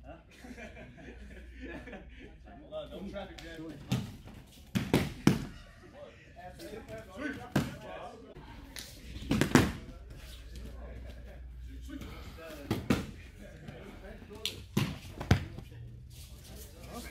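Thuds and slaps of bodies landing on padded judo mats as partners are swept with de ashi harai and break fall, a scattered series of impacts, the loudest about a third of the way in and just past halfway.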